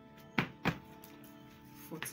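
Two quick thumps on a wooden cutting table, about a third of a second apart, over steady background music.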